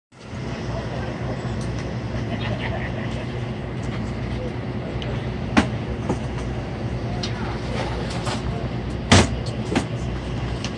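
Steady low mechanical hum, with a sharp knock about halfway through and two more near the end.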